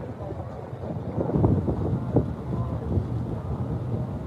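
Wind rumbling on a phone's microphone, with faint background voices.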